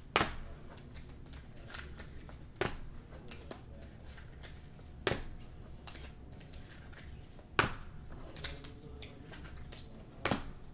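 Sharp plastic clacks of a clear hard plastic card holder being handled and set down, four loud ones about two and a half seconds apart, with lighter clicks and soft card rustling between them.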